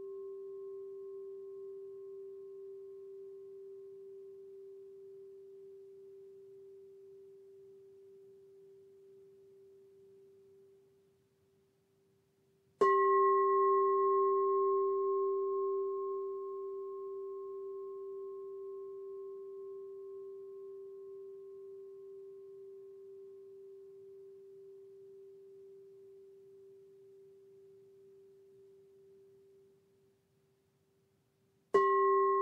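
A singing bowl's ring fades away over the first eleven seconds. About 13 seconds in the bowl is struck once with a mallet and rings with a steady low hum and higher overtones, dying away slowly until it is nearly gone at the end.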